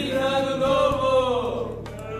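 Young male voices calling out together in one long held note that rises a little and then falls away over about a second and a half.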